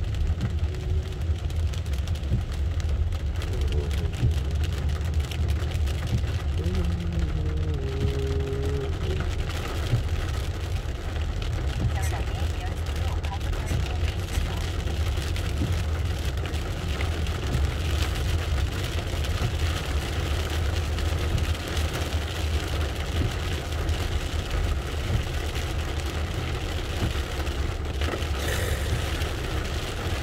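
Car cabin sound while driving through a heavy rain shower: a steady low engine and road rumble with the hiss of tyres on a wet road and rain on the car.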